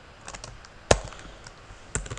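A few separate keystrokes on a computer keyboard as code is typed, one of them much louder about halfway through.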